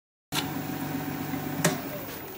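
Jet 1840 wood lathe running with a steady motor hum as a spindle workpiece spins between centres. The sound starts suddenly just after the beginning, and there is one sharp click about one and a half seconds in.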